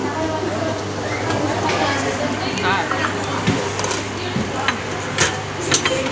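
Background chatter over a steady low hum in a busy eatery, with two sharp metal clinks near the end from a serving ladle against the stainless-steel buffet tubs.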